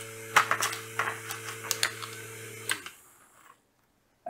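Small 6 V DC motor driving a fan blade, running with a steady hum while sharp irregular clicks sound over it. About three seconds in, the hum stops with a click as the relay switches the motor off on its timer, and the blade spins down quietly.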